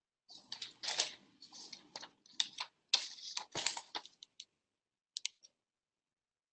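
Paper rustling and crinkling as a paper-wrapped cardboard box is handled and turned over, in irregular bursts for about four seconds, followed by a few short clicks near the end.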